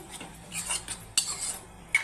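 Metal spoon stirring thick beaten-rice payasam in a stainless steel pot, scraping through it. The spoon strikes the pot sharply a little over a second in and again at the end, the last strike ringing briefly.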